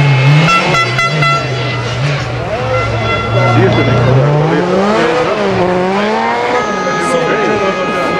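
Skoda Fabia S2000 rally car's four-cylinder engine passing at speed, its revs rising and falling through gear changes.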